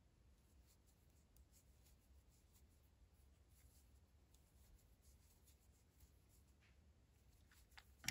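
Near silence: room tone with faint, scattered soft ticks and rustles of a crochet hook working yarn into double crochet stitches.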